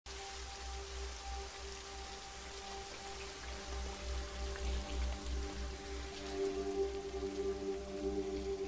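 Heavy rain falling on a street, with a quiet film score of long held notes over it that swells and adds notes near the end.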